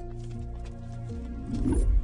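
Background film score: sustained held notes, then a deep rumbling swell that grows louder over the last half second.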